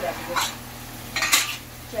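A metal spoon clinking and scraping against a steel pressure cooker pot twice, a short clink about half a second in, then a louder, longer scrape a second later.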